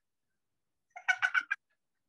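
A woman's short burst of laughter: about five quick 'ha' pulses about a second in, lasting half a second.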